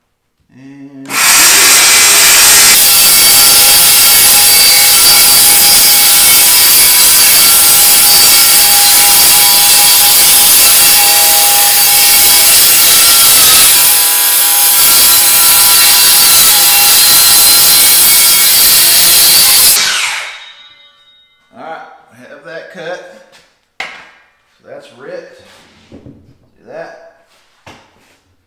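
A DeWalt 20V Max cordless circular saw rips a long cut through grooved plywood. The blade runs loud and steady for about 19 seconds with a brief dip about two-thirds of the way through, then winds down after the cut is finished.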